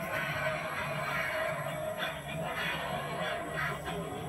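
Film soundtrack music playing from a television during the end credits, picked up from the room.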